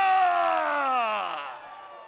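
A ring announcer's drawn-out, held call of a fighter's name: one long vowel sliding down in pitch and fading out about a second and a half in.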